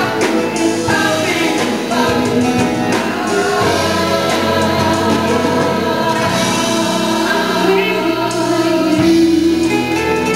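Live pop song: a woman sings lead into a microphone over band accompaniment, with a group of backing singers.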